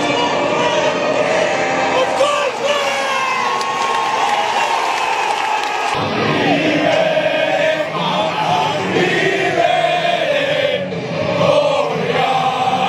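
Music with singing voices, changing at about six seconds to a crowd of students singing and chanting together in unison.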